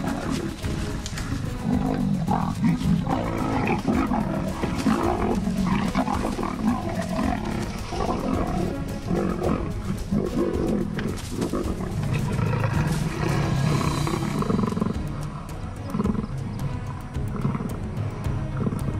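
Leopards snarling and growling aggressively, as in a fight, over background music.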